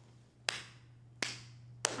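Three slow, sharp hand claps about two-thirds of a second apart, each leaving a short echo: a sarcastic slow clap.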